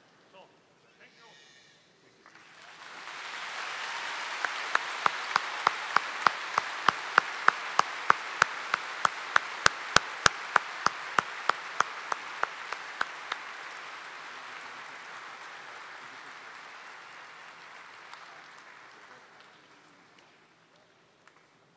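An audience applauding, swelling up about two seconds in and slowly dying away toward the end. One loud clapper close to the microphone claps steadily about three times a second for several seconds in the middle.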